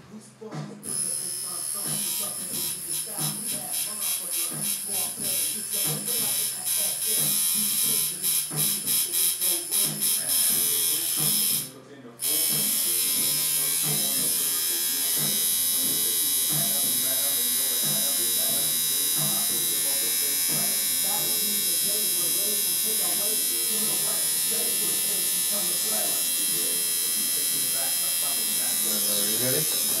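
Electric tattoo machine buzzing. It runs in short stop-start spurts for the first ten seconds or so, pauses briefly, then runs steadily.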